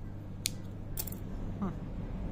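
Spring-loaded thread snips cutting yarn with a sharp click about half a second in, then a short clatter about a second in as the snips are put down on a wooden table.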